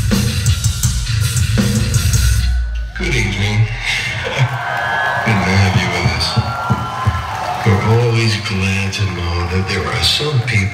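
A metallic hardcore band playing loud with pounding drums, cutting off abruptly about three seconds in. After that a man's voice comes over the PA against crowd noise.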